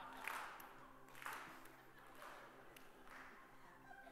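Near silence: room tone in a large hall with a faint steady low hum and four brief soft sounds about a second apart.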